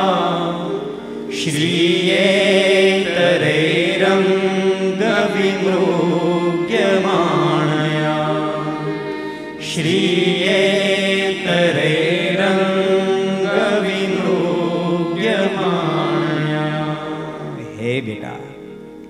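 A man chanting a Sanskrit shloka in a sung, melodic style, in two long phrases, the second beginning about ten seconds in.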